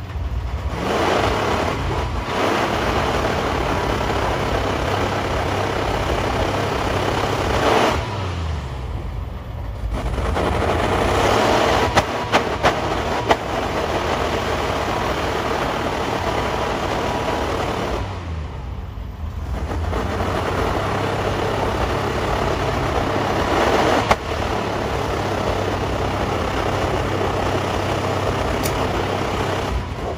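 Fleetwood Southwind motorhome engine idling rough with a steady low rumble, under a hiss that drops away briefly twice. A few sharp clicks come about twelve seconds in.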